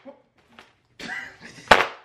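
A single sharp, loud crack near the end from a large folding hand fan being snapped. A brief voice comes just before it.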